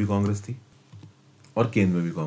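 A man lecturing in Hindi, with a pause of about a second in the middle before he speaks again.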